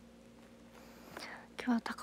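A woman's soft, whispery voice starting to speak about a second in, with a breath before it and louder words near the end, over a faint low steady hum of room tone.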